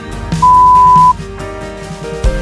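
An interval timer's long electronic beep, one steady high tone of under a second about half a second in, marking the end of a work interval. It is heard over background pop music with drums.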